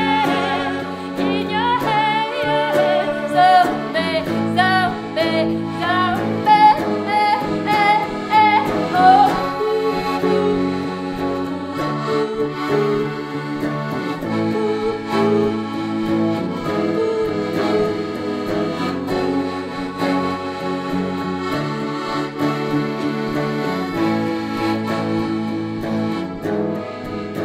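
Live band music: a woman singing high, wavering notes over electric guitar and piano accordion. About ten seconds in the voice stops, and the accordion carries an instrumental passage with the guitar underneath.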